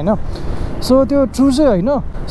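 A man talking, over a steady low background of the scooter's engine and road noise while riding.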